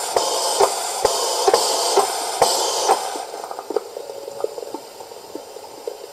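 Sound decoder in a gauge 1 brass model steam locomotive playing a standstill boiler-simmering sound through its small loudspeaker: a steady hiss with short clicks every half second or so. The louder hissing falls away about three seconds in. The sound comes from another KM1 locomotive's sound project, not yet the class 59's own.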